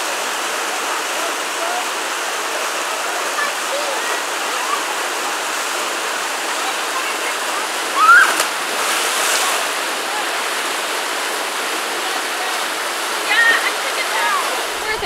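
Steady rush of water pouring down a smooth granite slope into a pool. About eight seconds in, a short rising shout and a louder burst of splashing come as a person slides down into the water.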